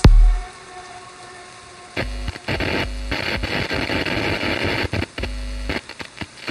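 End of a dark techno track: one deep bass hit at the start, then a rain-like hiss that comes back loud about two seconds in, chopped on and off with low bass pulses under some segments.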